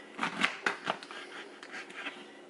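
Chef's knife slicing through fresh pineapple flesh on a cutting board: a quick run of short cutting and knocking sounds, the loudest in the first second, fainter ones after.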